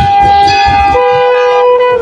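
Dhamal music: long, held wind-instrument notes sound over the last drum strokes, and the drumming stops about a second in while a steady wind-instrument note carries on.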